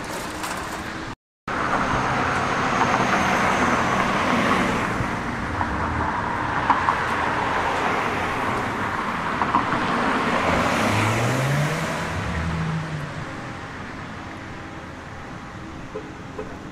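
City street traffic: cars driving past in a steady wash of road noise, with one engine's pitch rising and falling as a vehicle passes late on. A brief gap in the sound about a second in.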